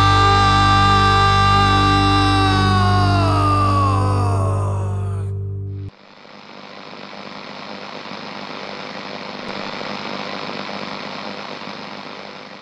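A rock band's final chord on electric guitar and bass rings out, the guitar's pitch sliding down as it fades, and is cut off suddenly about six seconds in. A steady hiss of noise follows, swelling slightly and then fading.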